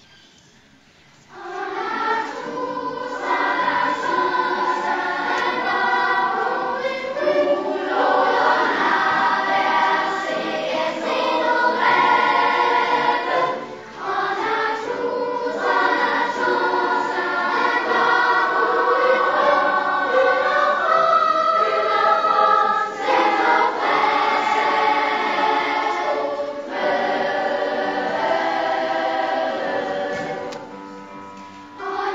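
Children's choir singing, starting suddenly about a second and a half in, with short breaks between phrases.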